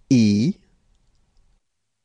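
Speech only: a voice says the French letter name "i" ("ee") once, briefly, at the start, then near silence.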